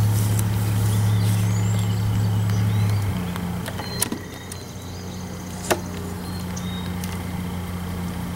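Steady low hum of a package of honeybees in a white plastic package cage, loud for the first three seconds and then softer. A few sharp clicks come from the package and hive parts being handled.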